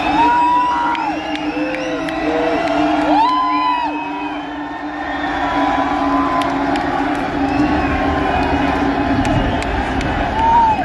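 Large concert crowd cheering, with many separate whoops and yells rising and falling in pitch, over a low steady drone from the band's intro music.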